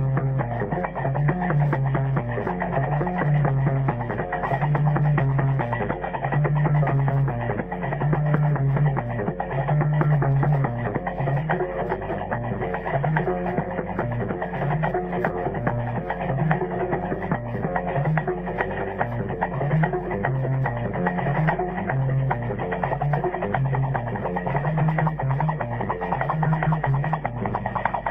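Gnawa music: a guembri, the three-string bass lute, plays a repeating low riff over a steady metallic clatter typical of qraqeb iron castanets.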